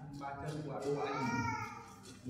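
A man's voice speaking, with a higher drawn-out call that rises and falls about a second in.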